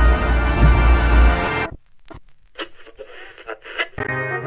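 Experimental film score: loud, dense music over a heavy pulsing bass cuts off abruptly about one and a half seconds in. A much quieter, thin, tinny passage with sharp clicks follows.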